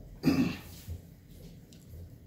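A man clears his throat once, briefly, near the start.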